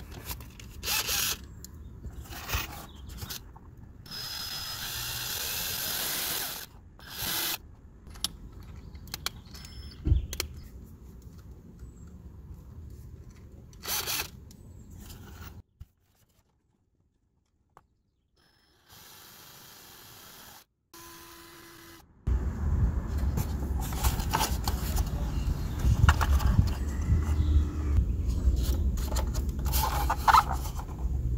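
Cordless drill fitted with a step (Christmas tree) drill bit: the chuck clicking as it is tightened, then the drill running briefly at speed for about two seconds. The last several seconds hold a loud, rough, low rumble with knocks.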